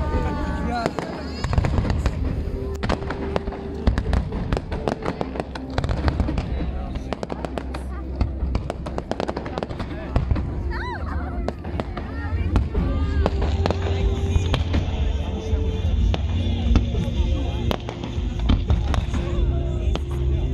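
Aerial fireworks bursting in a dense, continuous run of bangs and crackles over a low rumble.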